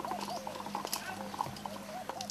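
A chicken clucking in a steady run of short notes, about three a second, over a low steady hum.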